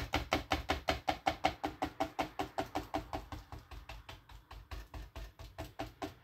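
Stiff paintbrush stippling thick acrylic paint onto paper: rapid, even taps about six a second. They grow fainter in the middle and pick up again near the end.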